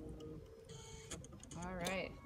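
Light mechanical clicking from a Baby Lock embroidery machine while it is being rethreaded, over a faint steady hum. A short vocal sound comes near the end.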